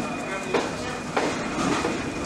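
Train hauled by a CRRC CDD6A1 diesel-electric locomotive running over metre-gauge track: a steady wheel-on-rail noise with two sharp knocks, about half a second and a second in.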